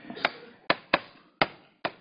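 Chalk knocking against a blackboard while writing: five sharp, irregularly spaced taps.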